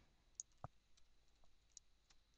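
Near silence with a few faint, scattered computer keyboard keystroke clicks as a word is typed.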